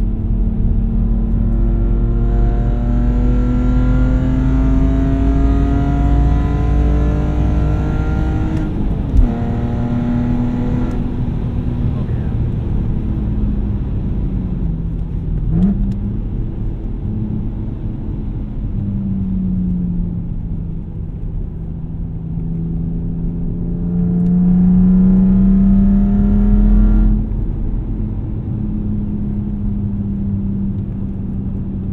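BMW E46 330xi's 3.0-litre straight-six with eBay headers and a muffler delete, heard from inside the cabin. The exhaust note climbs under acceleration for several seconds, then drops sharply with a click at a gear change about nine seconds in. It cruises lower for a while, climbs again under throttle to its loudest stretch, and falls off a few seconds before the end.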